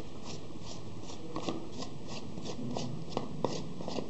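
Threaded plastic cap of a data logger enclosure being unscrewed by hand: the plastic threads rubbing and rasping in short, even strokes about three a second, with a few light clicks in the second half.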